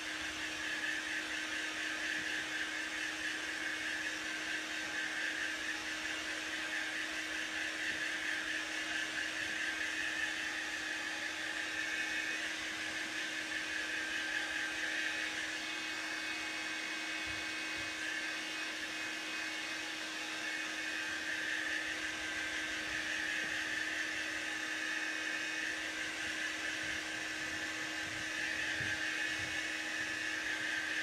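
Small handheld hair dryer running steadily on its low setting: an even rush of air with a low hum and a higher whine.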